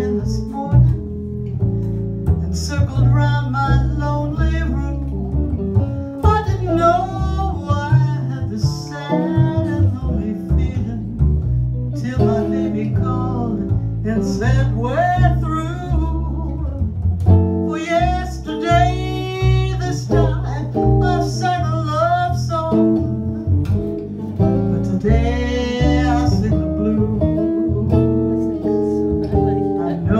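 Live jazz blues: a female singer accompanied by a hollow-body electric guitar and a plucked upright bass.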